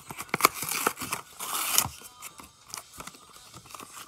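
Foil wrapper of a Pokémon XY Phantom Forces booster pack being torn open and crinkled, loudest in the first two seconds. Fainter rustles and clicks follow as the cards are handled.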